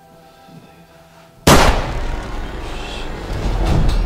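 A single gunshot about one and a half seconds in, a sudden very loud crack, over a film score that swells after the shot.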